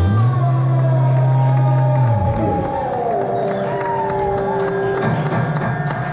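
Live rock band's closing sound ringing out: a low held note stops about two seconds in while electric guitar tones slide down in pitch and fade. Near the end the crowd starts to cheer.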